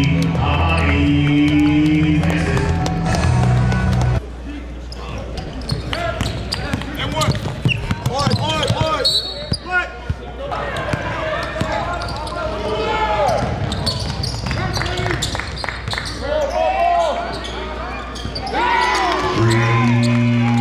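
Music with a steady beat for about four seconds, then it cuts to live game sound: a basketball bouncing on a hardwood court, sneakers squeaking and players' voices calling out. The music comes back about a second before the end.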